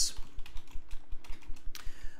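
Typing on a computer keyboard: an irregular, quick run of key clicks.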